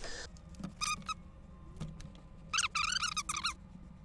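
High-pitched squeaking in two bouts: a short squeak about a second in, then a longer run of wavering, warbling squeaks lasting about a second near the end.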